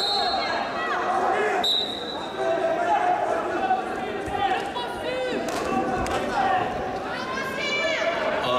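Wrestling-hall ambience: a constant murmur of voices, with two short high whistle blasts in the first two seconds. As two wrestlers grapple on the mat, a few dull thuds and high squeaks of shoes follow.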